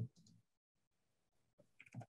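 Near silence with a few faint, short clicks near the end.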